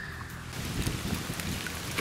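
Water streaming and splashing off a mesh fishing keepnet as it is lifted out of the water, a steady rain-like splatter that starts about half a second in.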